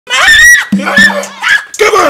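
A high-pitched scream opens, followed by shorter cries over a low steady tone, and another shout near the end.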